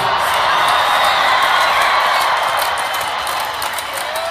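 A large crowd cheering and whooping as the band's music stops right at the start, the cheer slowly fading.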